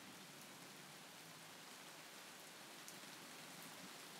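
Faint, steady recorded rain: an even hiss of rainfall with a few light drop ticks.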